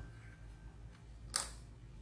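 A single sharp metallic click about one and a half seconds in, as a steel sewing needle is set down on the table, over a faint low hum.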